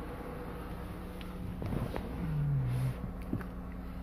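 Infiniti Q50's 3.0-litre twin-turbo V6 idling after a remote start, a steady low hum heard from inside the cabin.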